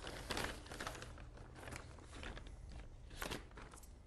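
Clear plastic bag crinkling and rustling as a coiled wiring harness is pulled out of it, with a couple of sharper crackles.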